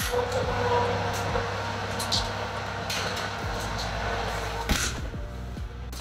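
Oven door and loaf tin being handled as bread is put in to bake: a few short knocks and clunks over a steady rushing noise, with quiet background music.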